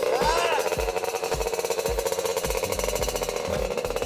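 Small 50cc mini dirt bike engine running at a fast, even idle, a rapid steady pulsing.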